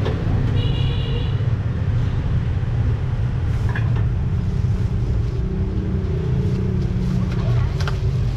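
Steady low rumble of street traffic, with a short high beep about a second in.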